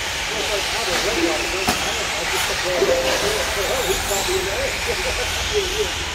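1/10-scale short course RC trucks racing on an indoor dirt track: a steady hiss of motors and tyres, with faint indistinct voices underneath and a single sharp knock about a second and a half in.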